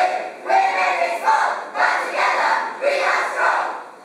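A choral speaking team of school students reciting loudly in unison, a run of short, punchy phrases spoken together as one voice.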